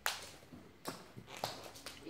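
A sharp knock, then a few lighter taps and clicks.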